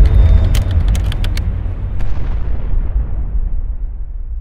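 A deep cinematic boom sound effect, a low rumble fading steadily away, with a quick run of sharp clicks about half a second to a second and a half in.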